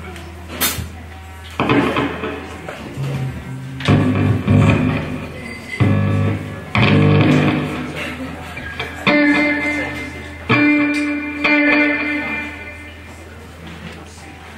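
Amplified electric guitar and bass guitar played in short stop-start bursts of notes and chords, with held ringing notes from about nine to twelve seconds in, over a steady low amplifier hum.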